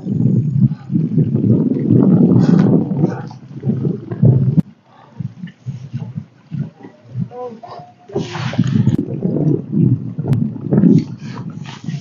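Wind buffeting the microphone in uneven gusts. It cuts off abruptly about four and a half seconds in and comes back strongly near the two-thirds mark.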